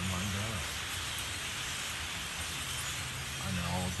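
The massed sound of a huge flock of blackbirds passing overhead: a steady, even hiss of many birds together, with no single call standing out.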